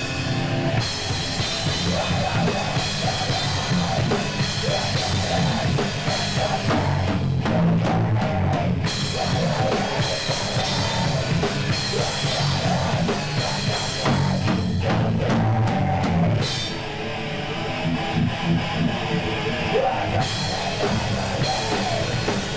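Live hardcore band playing: distorted electric guitars, bass and a pounding drum kit, with stop-start hits a third of the way in and again past halfway. Heard through a VHS camcorder's microphone.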